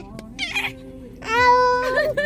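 A baby gives a short breathy laugh, then a long, high, steady squeal in the second half.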